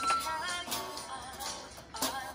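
Toy electronic keyboard playing bright electronic notes: a held note that stops just after the start, then a run of short notes.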